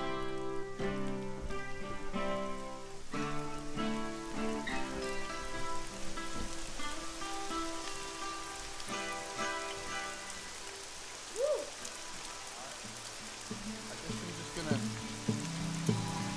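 Steady rain falling with a guitar picking slow, ringing chords over it; the guitar drops away about ten seconds in, leaving mostly the rain, and comes back near the end.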